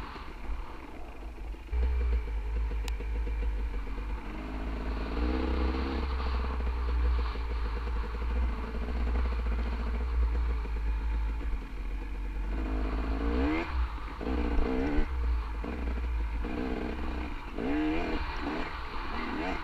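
Dirt bike engine running under load on a trail, its pitch rising and falling with the throttle, with quick revs up twice near the end. A low rumble of wind on the microphone runs under it.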